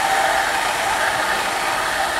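Water rushing steadily through the open main drain valve of a wet fire sprinkler system during a main drain test, a constant hiss.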